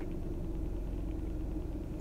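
Steady low hum and rumble of a car idling, heard from inside the cabin.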